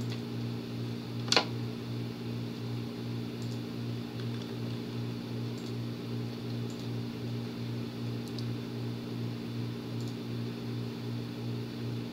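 Steady low hum of a fan running, with one sharp click about a second and a half in and a few faint ticks after it, typical of computer mouse clicks.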